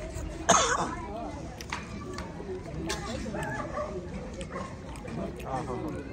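Several voices talking in the background, with one short, loud cry about half a second in.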